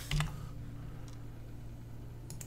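A few sharp clicks from a computer keyboard at the very start, with a fainter click about a second in, over a steady low electrical hum.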